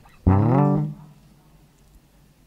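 A guitar sounded once through the PA, a low note ringing for about half a second before it is damped.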